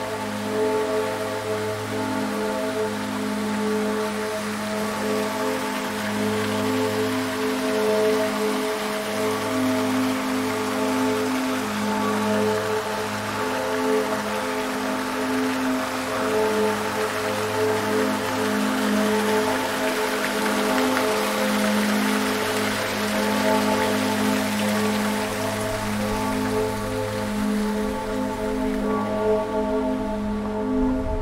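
Water splashing and spilling from a tiered stone fountain: a steady hiss that swells through the middle and fades near the end. Music with long held chords runs underneath.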